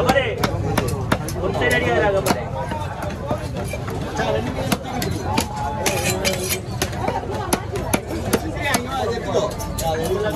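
People talking, with irregular sharp knocks of a knife chopping fish on a wooden block.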